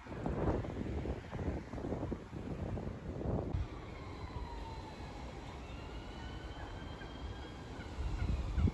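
Outdoor ambience with wind buffeting the phone's microphone in gusts for the first few seconds. It then settles to a quieter hush, through which faint tones slowly rise and fall in pitch.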